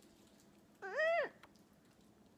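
A woman's short, high-pitched whimper of disgust through closed lips, rising then falling in pitch, once, about a second in.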